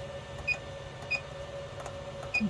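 SMA Sunny Island inverter's keypad beeping as its menu buttons are pressed: two short high beeps, about half a second and about a second in, over a steady faint hum.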